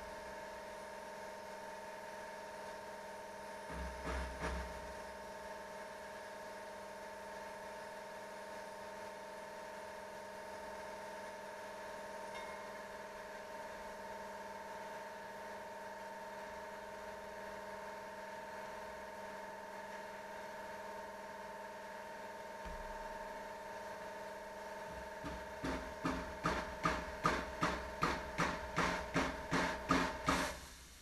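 Rubber hammer tapping the dented steel sheet metal around a Triumph TR250's headlight recess, working the punched-in panel back out: a short cluster of taps about four seconds in, then an even run of taps, about three a second, over the last five seconds. A steady hum with a few fixed tones sounds underneath throughout.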